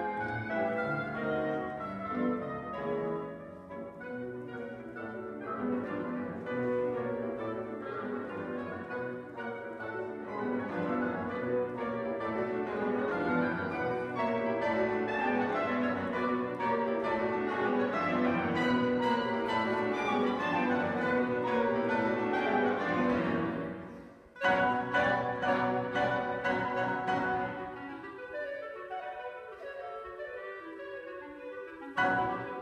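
Live chamber music from a woodwind ensemble with piano: oboe, clarinet and bassoon over piano. The playing breaks off sharply for a moment about 24 seconds in, comes back loud, and thins out near the end.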